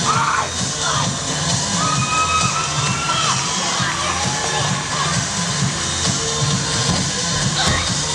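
Performers' shouted kiai yells during a martial arts weapons demonstration: short yells near the start, one long drawn-out yell a couple of seconds in, and more near the end. Background music and crowd noise run underneath.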